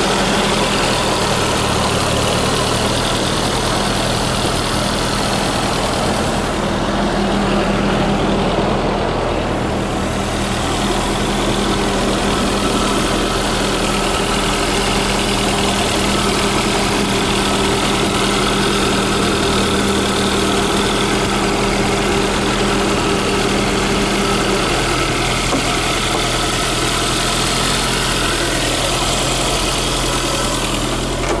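Lancia Delta's four-cylinder engine idling steadily, heard from over the open engine bay. A steady hum that runs alongside it cuts out about three-quarters of the way through.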